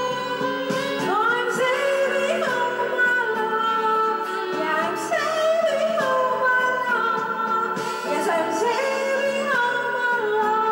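A woman singing into a handheld microphone over a karaoke backing track, holding long notes that slide up and down in pitch.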